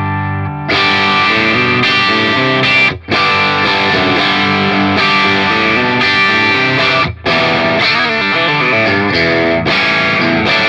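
Electric guitar played through a Big Joe Stompbox Co. Vintage Tube Overdrive pedal into a clean amp channel, with a natural overdriven crunch and the pedal's presence knob being brought up. A held chord rings out, then rhythmic chords and riffs begin just under a second in, with two brief muted stops about three and seven seconds in.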